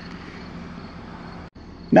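Car engine idling, a steady low hum heard from inside the cabin, which drops out for a moment about a second and a half in.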